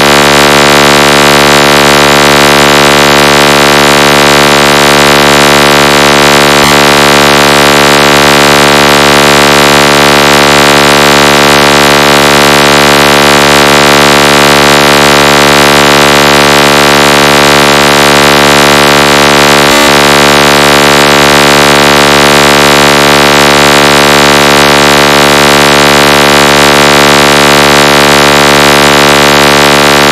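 Loud, heavily distorted electronic buzzing tone held steady and unchanged, a 'dot tone' of the kind played through big sound systems in DJ speaker competitions.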